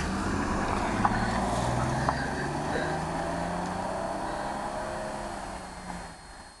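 A sedan's engine pulling away and accelerating, its pitch rising slowly while the sound gradually fades as the car drives off, with a couple of light knocks about one and two seconds in.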